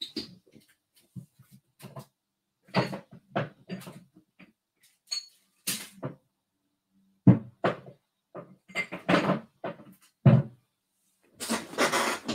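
Rummaging through a cupboard for glass perfume bottles: a string of short, irregular knocks and clinks, louder and closer together in the second half.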